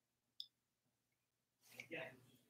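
Near silence: room tone, with one faint short click about half a second in and a faint brief sound near the end.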